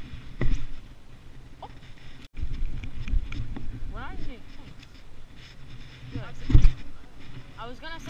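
Low, muffled bumps and rumble on a body-worn action camera's microphone as the angler handles his baitcasting reel, with two heavier thumps about half a second in and again near the end, and faint voices in the background.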